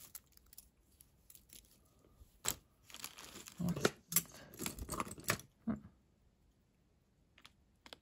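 Hands rummaging through a pile of metal costume jewelry: chains, bangles and pendants clinking and rattling against each other, with some rustling and crinkling, in a few short bursts from about two and a half seconds in, then quiet for the last couple of seconds.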